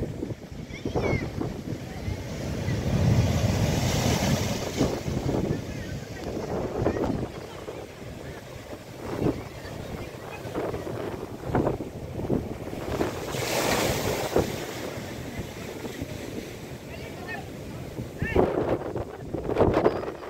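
Storm surf crashing and washing over a rock seawall, with wind buffeting the microphone. The noise swells and fades with the waves, and there is a louder surge about two-thirds of the way through.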